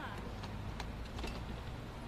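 Low, steady rumble of a slow-moving Mercedes hearse under the faint voices of a gathered crowd, with scattered sharp clicks.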